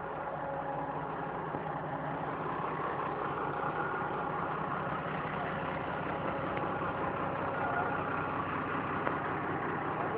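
Ford 7840 tractor's diesel engine running steadily at low revs, growing gradually louder.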